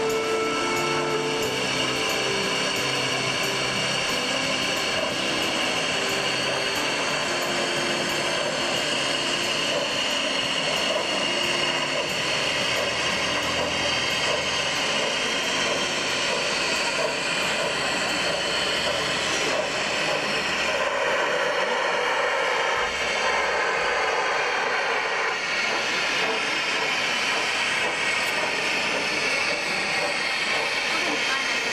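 Gauge 1 model BR 50 steam locomotive running with its steam and smoke effects working, giving a steady hissing running noise.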